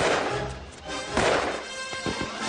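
Orchestral film score, with a sharp impact right at the start and a second loud rush of noise just past a second in.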